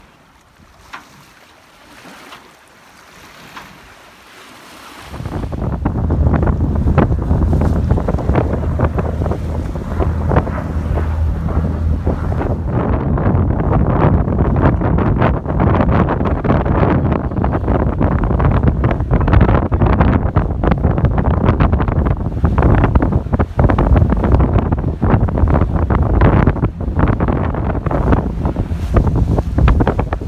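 Wind buffeting the microphone on a sailing boat at sea, over the wash of the water. It is fairly quiet at first, then from about five seconds in the wind turns loud and gusty and stays so.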